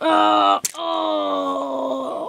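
A child's voice making two long drawn-out groans: a short one, then a longer one sliding slightly down in pitch, with a sharp click between them.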